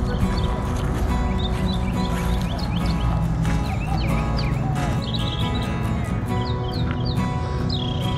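Wind buffeting the microphone in a steady low rumble, under background music. Short, high, downward-sweeping bird chirps come through more often in the second half.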